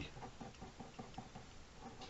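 Faint scratching of an ink pen on paper, a quick run of short hatching strokes.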